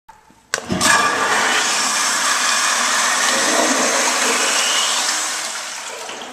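Metcraft stainless steel restroom fixture flushing: a sharp click about half a second in, then a loud rush of water that holds for about four seconds and tapers off near the end.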